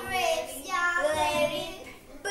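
A child's high voice singing, the notes drawn out and gliding, fading near the end.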